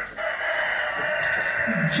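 Whiteboard marker squealing against the board in one long, steady squeak of about a second and a half as it is dragged across the surface.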